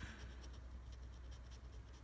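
Scratch-off lottery ticket being scratched: a faint run of quick scraping strokes rubbing the coating off a number spot.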